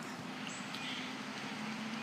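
Steady background noise with a faint, even low hum.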